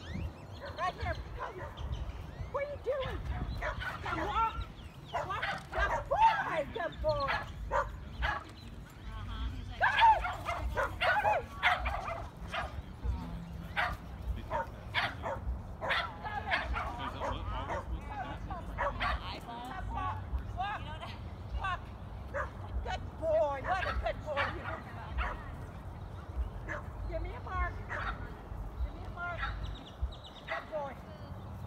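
A dog barking and yipping in quick, repeated short calls, with a steady low rumble underneath.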